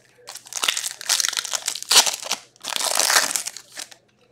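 Foil wrappers of hockey card packs crinkling as hands handle them, in two long stretches of rustling with a short break between them.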